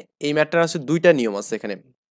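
Speech only: a voice talking steadily, with a short pause near the end.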